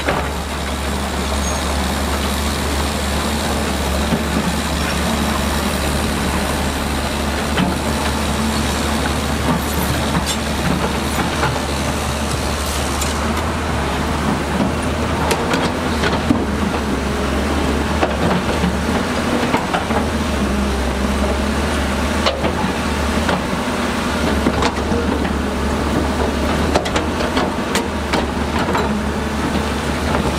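Heavy diesel machinery working: a Shantui SD13 crawler bulldozer and a hydraulic excavator running together as a steady low drone, with frequent small clanks and knocks from steel tracks and pushed stones.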